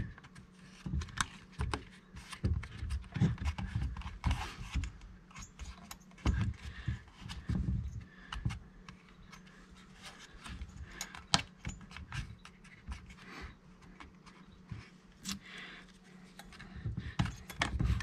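Black plastic shroud being worked by hand into place over the flywheel of a chainsaw powerhead, making irregular small plastic clicks, taps and scrapes.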